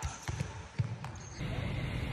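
A few sharp knocks or thumps, unevenly spaced, in the first second. A steady low outdoor background hum follows.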